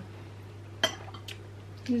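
Cutlery clinking once against a plate while eating, about a second in, with a fainter tap a little later, over a steady low hum.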